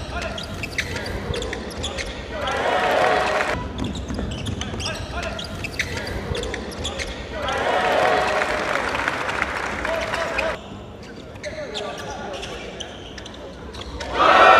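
Basketball bouncing on a hardwood gym court during live play, with shouting from players and benches that swells twice, about two seconds in and again around eight seconds.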